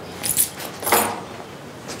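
Two short rustles of a cotton shirt being handled, as it is held out and pulled on over the arms.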